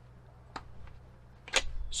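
A small plastic click about half a second in, then a fainter tick, as the extension wand is pushed and twisted into the quarter-turn socket of a Sunglife cordless pressure washer gun.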